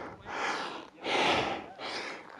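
A climber breathing hard from exertion on a steep ascent: two long, heavy breaths.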